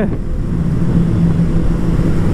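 Motorcycle riding at a steady speed through a road tunnel: a steady engine note under loud rushing wind noise.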